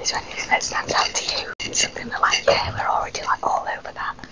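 Hushed, whispered talk between people close to the microphone, with a brief cut-out in the sound about one and a half seconds in.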